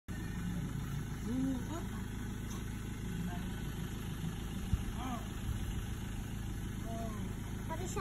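Pickup truck engine idling steadily, with faint voices in the background and a single low knock near the middle.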